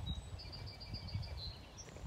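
A small songbird gives a quick, high trill of repeated chirps lasting about a second, with one more short high note near the end, over a low outdoor rumble from the moving microphone.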